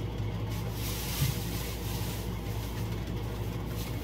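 Chicken thighs and vegetables sizzling in a steaming skillet, a steady hiss, over a steady low electrical hum.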